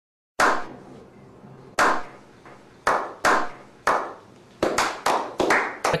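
A slow clap: single, echoing hand claps spaced more than a second apart at first, quickening into faster clapping near the end.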